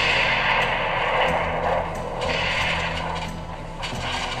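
Stock explosion sound effect: the blast goes off just before, and its long noisy rush and rumble fades out over about three and a half seconds, swelling again briefly about two seconds in.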